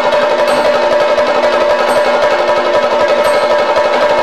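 Dance accompaniment on Kerala drums: a fast, continuous drum roll with a steady high tone held above it, keeping an even level throughout.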